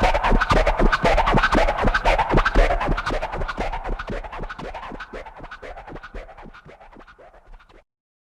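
Hip hop track ending on turntable scratching over the beat, in rapid, regular strokes. It fades out from about three seconds in and stops abruptly just before the end.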